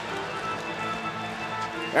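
Music playing in the arena during a stoppage, with several steady held notes over the background haze of the arena.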